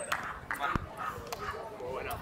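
Several people's voices talking and calling out at a distance, with a few sharp clicks.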